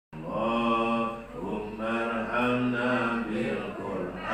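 A voice chanting in long, drawn-out melodic phrases, in the style of Islamic devotional recitation. There is a short break between phrases about a second and a half in.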